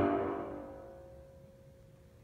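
The closing chord of an operatic aria's accompaniment rings out and fades away over about a second and a half, its last tone lingering faintly.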